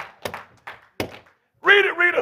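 A quick run of sharp knocks, about four a second, fading out within the first second, followed by a pause.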